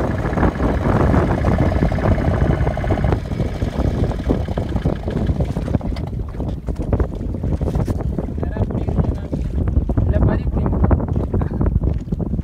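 Wind buffeting the microphone in a steady low rumble, with voices faintly under it in the first few seconds.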